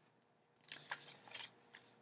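Faint rustling of paper as the tabs of a paper foldable are turned over by hand: a few short crinkles, starting about two-thirds of a second in.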